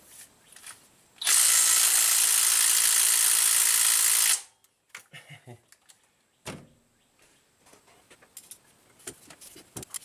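Cordless power tool running steadily for about three seconds, spinning out a timing cover bolt, followed by a few light clicks and knocks of metal.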